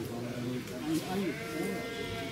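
A farm animal bleats once, a single drawn-out call starting about one and a half seconds in, over people talking.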